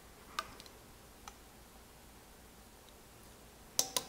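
Quiet room tone with a few faint clicks, about half a second and a second and a quarter in, then a sharper cluster of clicks near the end: small handling noises of a vanilla extract bottle as it is opened and brought to a steel mixing bowl.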